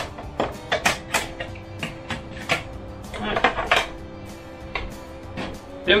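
Background music with steady held tones, over which a box wrench makes repeated short metal clicks as it works the fairing bracket bolts, tightening them only lightly.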